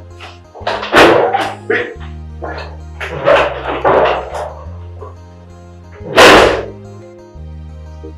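Background film score with sustained low bass notes that change about once a second, cut through by several loud, short, harsh bursts: a cluster about a second in, more around three to four seconds, and the loudest about six seconds in.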